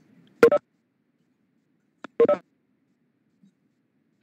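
Two short electronic chimes, each a quick pair of tones, about 1.8 seconds apart.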